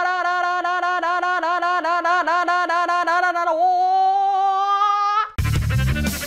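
A man's high-pitched held yell, pulsing rapidly about six times a second, then held as one steady note. About five seconds in it cuts off abruptly and music with a heavy beat starts.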